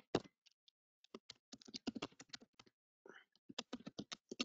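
Typing on a computer keyboard: quick, irregular runs of key clicks with short pauses between them.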